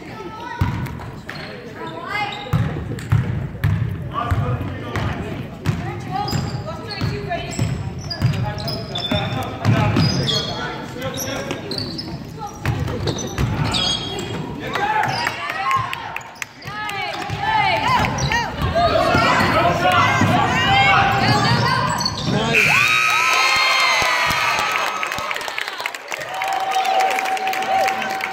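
Basketball bouncing on a hardwood gym floor during play, with spectators' and players' voices echoing in the hall. The sound gets louder and busier about halfway through.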